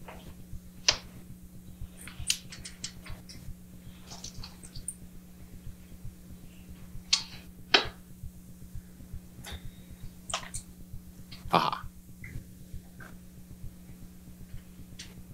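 Laptop keyboard keys and clicks tapping irregularly while a search is typed and a result opened, over a steady low electrical hum. A short, louder noise sounds near the end.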